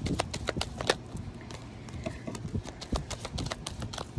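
A deck of oracle cards being shuffled by hand, cards slapping and clicking against each other. There is a quick run of clicks in the first second, then a few scattered clicks.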